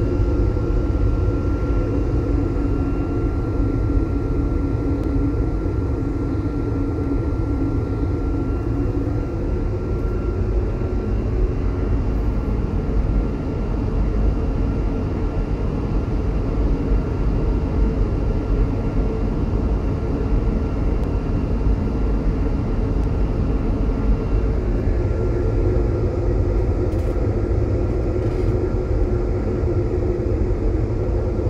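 Steady in-flight cruise noise inside an Airbus A220-300: a low, even rush of airflow and engine noise from its Pratt & Whitney PW1500G geared turbofans. A faint high whine fades out about ten seconds in.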